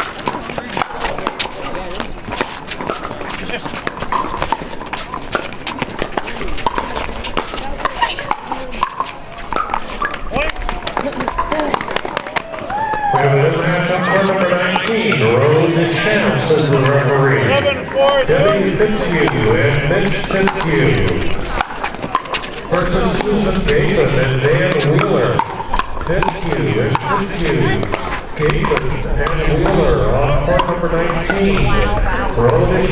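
Pickleball paddles striking a hard plastic ball in sharp clicks, with rallies on this and nearby courts. About halfway through, a man's voice starts talking loudly and becomes the loudest sound, with a short break before it goes on.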